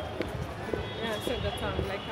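Busy city sidewalk: background voices of passers-by with footsteps on the pavement.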